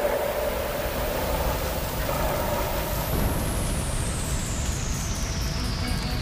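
Dramatic sound effect for flames bursting up: a steady rushing noise under a high whistling tone that holds, then glides slowly down from about three seconds in.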